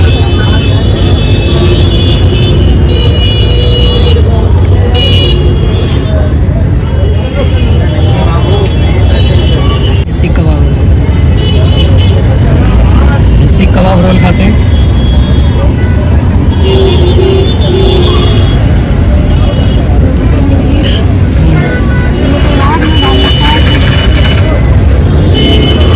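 Busy street ambience: a loud, steady low rumble of traffic with background crowd chatter and occasional vehicle horn toots.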